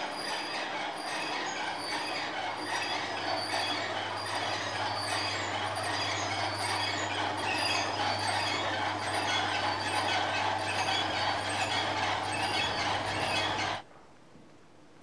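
Electric drive of a large working Meccano model of a bucket-wheel excavator running, with metal gearing and parts clattering and squealing over a steady low motor hum. A small high click repeats about twice a second, as from a turning wheel or chain. The sound cuts off abruptly near the end.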